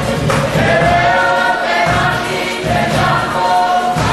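A group of voices singing a song together in harmony, holding long notes over a low, regular beat.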